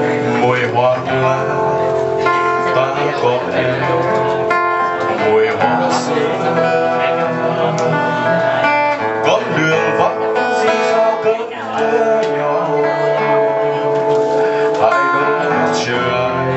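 A man singing a Vietnamese ballad into a microphone over acoustic guitar accompaniment.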